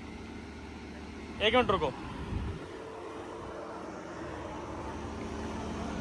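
Lamborghini Huracán's V10 engine idling with a steady low rumble, which grows slightly louder toward the end. A man's brief call breaks in about a second and a half in, followed by a low thump.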